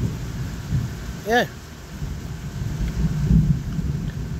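Rain falling on the building's roof with a low rumble that rises and falls, loudest about three seconds in.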